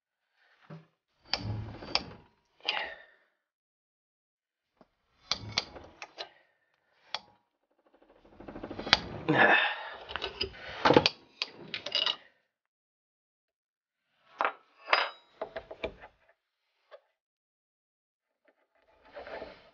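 Allen key and steel bolts clinking, rattling and scraping against a Brembo brake caliper as the bolts are loosened and pulled out. The sounds come in short bursts with quiet gaps between them and are busiest about halfway through.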